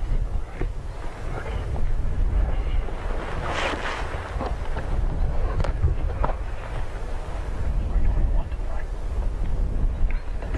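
Wind buffeting the microphone: a steady low rumble throughout.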